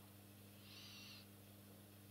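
Near silence with a low steady hum, and one faint, short high-pitched tone lasting about half a second, starting about half a second in.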